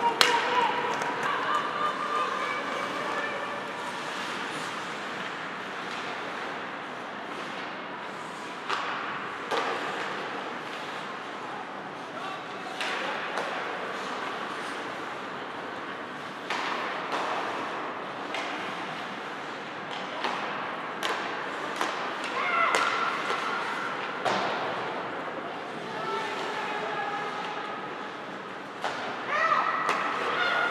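Ice hockey play in an indoor rink: scattered sharp knocks and thuds of sticks, puck and boards, with players' drawn-out shouts near the start and again toward the end.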